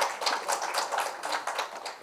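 Scattered clapping from a small audience: many quick, irregular claps over a light patter.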